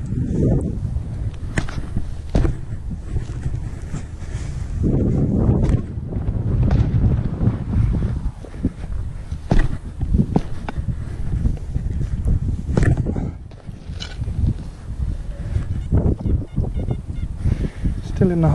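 A metal spade being driven into hard, grassy ground to cut out a plug, giving a run of short crunches, scrapes and knocks, over the rumble of wind on the microphone.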